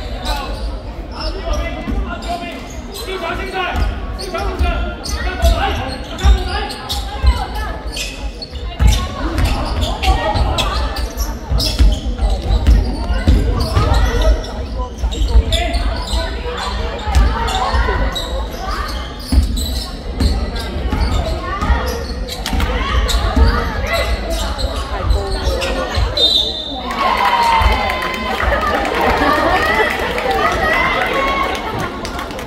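Basketball bouncing on a wooden gym floor during play, in a large sports hall, with players and spectators calling out, more voices near the end.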